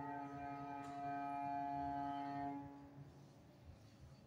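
A cello and a classical guitar hold a sustained chord: the cello's bowed note stays steady while a guitar note is plucked about a second in. The chord stops about two and a half seconds in and dies away into the room, closing the piece.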